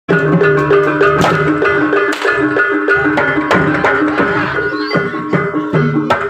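Javanese gamelan music for a jathilan horse dance: a quick run of hand-drum strokes over steady ringing pitched tones.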